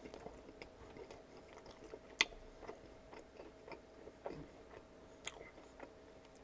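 Close-miked chewing of a sauced chicken tender: quiet, scattered wet mouth clicks, with one sharper click about two seconds in.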